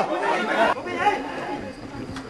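Spectators' voices chattering, louder in the first second, then fading to a lower mix of talk.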